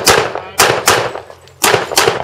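Handgun shots, four sharp reports: two close together, a third soon after, and a fourth after a short pause.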